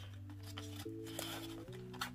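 Soft background music of held chords that change about every second, with a faint rustle of paper money and a wallet being handled under it.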